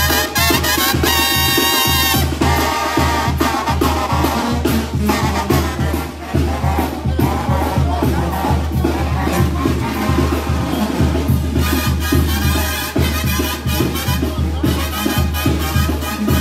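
Mexican banda, a brass and woodwind band, playing a lively number at full volume, with horns over a deep steady bass line and a driving drum beat.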